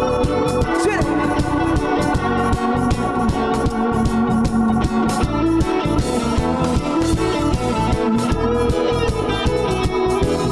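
Live band playing an instrumental passage: sustained organ-like keyboard chords with electric guitar and bass over a steady drum-kit beat, no vocals.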